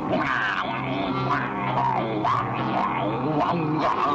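Cartoon background music: a held low note runs under short sliding notes higher up.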